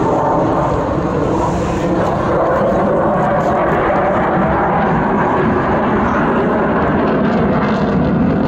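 Jet engines of a Sukhoi Su-30MKI fighter in display flight: a steady, loud jet noise.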